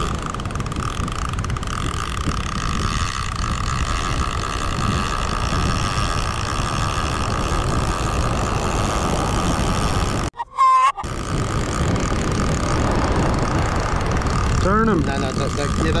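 Wind buffeting the microphone as a steady low rumble, with a steady high whine running under it. About ten seconds in the sound cuts out briefly with a short chirp.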